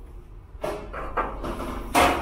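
Low room rumble with a few faint handling sounds, then a sharp metallic clank near the end as a hand takes hold of the stainless steel charcoal grill's handle and the clank rings briefly.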